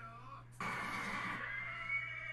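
A horse whinnying in the anime's soundtrack. It starts suddenly about half a second in as one long, slightly rising cry.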